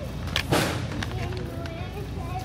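A short rustle about half a second in, from the plastic bag or the camera being handled, after a small click. Faint music and voices run underneath.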